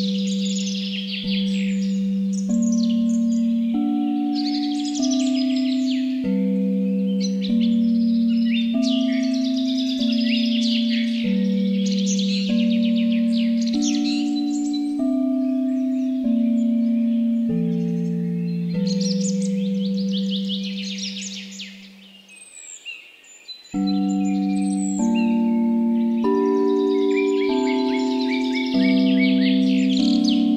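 Singing-bowl tones struck at an even pace, a new pitch about every second and a half, forming a slow melody, with songbirds chirping over them in repeated bursts. About two-thirds of the way through the tones die away, then start again a second or so later.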